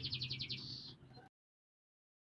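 A bird's rapid high trill, about a dozen notes a second, over a faint low hum. It stops about a second in.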